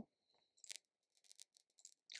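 Near silence, broken by three faint, short clicks spread through it; the first is the clearest.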